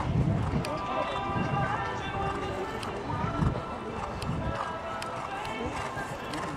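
Arena background of music and distant voices, with a few irregular low thuds.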